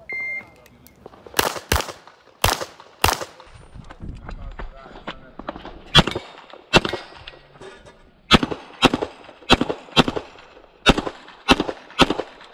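A shot-timer start beep, one short high tone, then handgun shots fired mostly in quick pairs, about a dozen in all, with a longer pause between about the third and sixth second.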